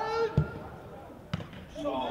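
Two thumps of a football being kicked, about a second apart, the second one sharper, with players' shouts just before and after.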